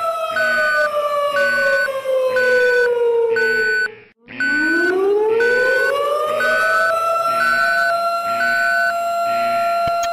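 Emergency alert alarm: a siren tone glides down in pitch over about four seconds, drops out briefly, then glides back up and holds steady. Throughout, a beep repeats about once a second.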